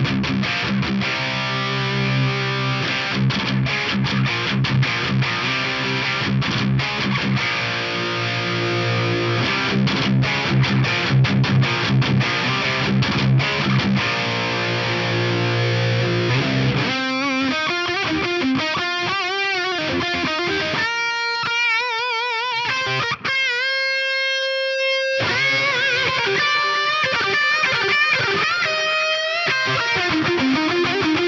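Distorted electric guitar played through the Fender Tone Master Pro's Mesa/Boogie Mark IIC+ amp model. It plays a chugging rhythm riff for a little over half the time, then switches to lead lines with long held notes and wide vibrato.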